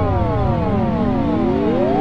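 Electronic synthesizer sweeps: a tone with many overtones glides down in pitch, then several rising sweeps overlap in from about a second in.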